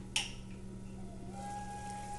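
A glass pot lid gives one sharp clink against the rim of a cast-iron skillet as it is grasped by its knob and lifted off a simmering curry, over a low steady hum. A faint steady tone comes in past the middle.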